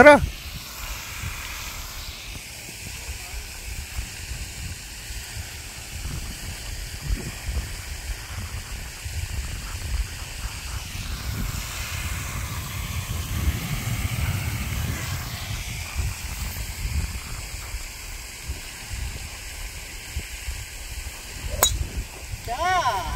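Low, steady rumble of wind on the microphone with a faint hiss. Shortly before the end, one sharp crack of a golf club striking a ball off the tee.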